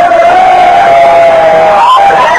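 Crowd of wedding guests cheering and shouting, with one long, high, held call over the noise that breaks off near the end.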